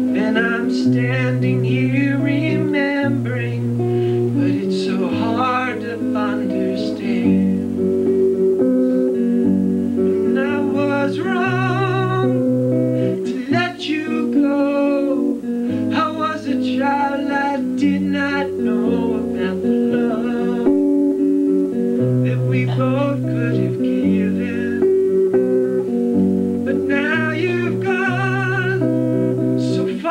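A man singing to his own strummed acoustic guitar, the voice wavering on held notes over a changing line of low guitar notes.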